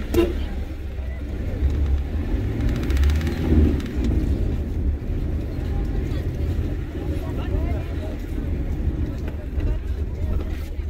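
Car engine and road rumble heard from inside the cabin as it creeps along at low speed, swelling a little a few seconds in. Voices of people outside murmur over it, with a brief knock right at the start.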